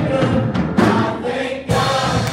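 Gospel worship music: a group of voices singing together over instrumental accompaniment.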